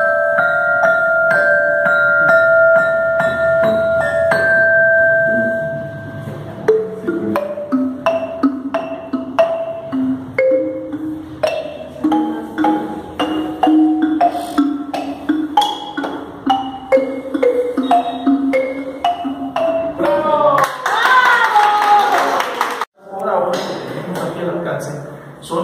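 Mallets striking the bars of an Orff metallophone, single high notes ringing on and overlapping. From about seven seconds in, a wooden-barred Orff xylophone is played note by note, with shorter, lower notes. Near the end voices come in over the instruments.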